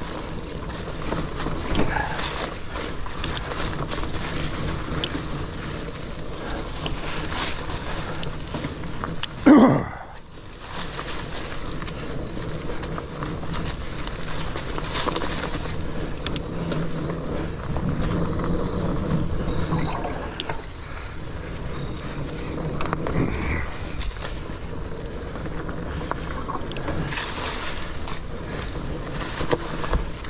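Mountain bike rolling over a leaf-covered dirt trail: steady tyre noise with frequent rattles and knocks from the bike over bumps. About nine and a half seconds in there is a short, loud sound that falls in pitch.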